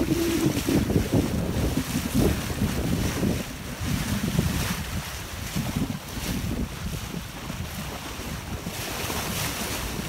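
Wind buffeting the microphone in uneven gusts over the wash of choppy sea water around a moving boat.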